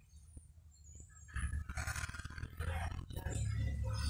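Handling noise on a phone microphone: a low rumbling and rustling that comes in about a second and a half in and grows louder toward the end, over the background hubbub of a busy store.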